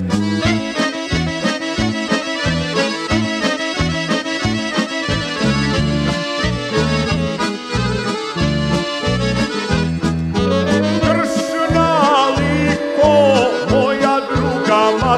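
Yugoslav folk song: accordion playing an instrumental passage over a bass line with a steady beat. A sung vocal comes back in about ten seconds in.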